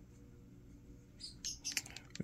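Flipper Zero directional-pad buttons being pressed: a quick run of small plastic clicks in the second half, as the menu is scrolled down.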